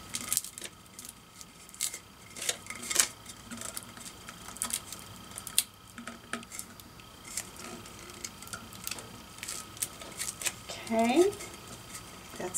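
Scattered light clicks, taps and rubbing as a glitter-coated tumbler is handled and turned while a vinyl decal is smoothed onto it by hand. A short, rising, voice-like sound comes near the end.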